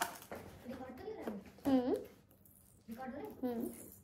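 A woman's voice in three short wordless exclamations and murmurs, with quiet gaps between.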